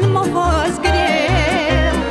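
Romanian folk song played from a playback track: a woman sings over band accompaniment with a steady bass beat. About a second in she holds a long note with wide vibrato.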